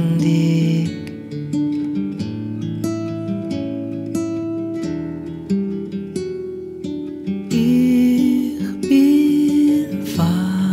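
Slow Yiddish song: an acoustic guitar picks single notes that ring out one by one, after a held sung note at the start. The singing comes back in the last couple of seconds.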